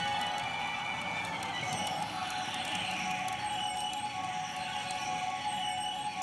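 Electronic music and effects from a pachinko machine, with a long falling sweep in the middle and faint fine ticking above it.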